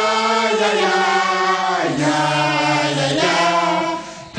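A choir singing long held notes in chords, dropping to a lower chord about two seconds in and shifting again near three seconds, then stopping just before the end.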